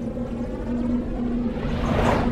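Synthesized intro music for a logo animation: a sustained low drone with faint higher tones, and a rush of noise that swells near the end.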